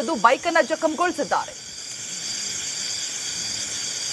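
A man's voice speaking Kannada until about a second and a half in, then a steady night-time background of insects chirping in a continuous high-pitched drone over a hiss.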